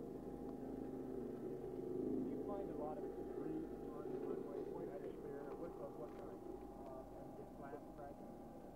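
Heavy earth-moving equipment's engine running steadily, with faint voices speaking over it.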